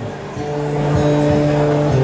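Live country band playing soft, sustained chords, with long held notes that change a few times, under a spoken song introduction.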